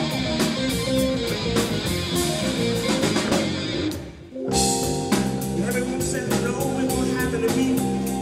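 Live rhythm and blues band playing: electric guitar, drum kit and electric keyboard together. The band stops briefly about four seconds in, then comes straight back in.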